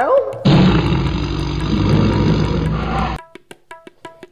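A loud edited-in sound effect, a rough, roar-like music sting that starts abruptly about half a second in and cuts off sharply after nearly three seconds, followed by a few short high tones.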